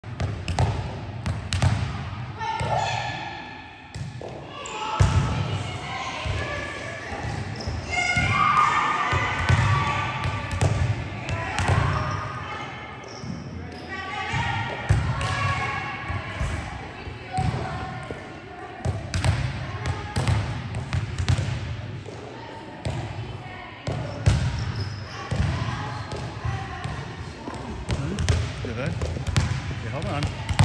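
Volleyballs bouncing and being struck on a hard gym court, a string of sharp impacts at irregular intervals, with voices in the background.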